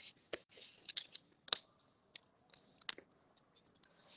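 A square sheet of origami paper being folded and creased by hand: soft rustling broken by a few short, sharp crackles of the paper.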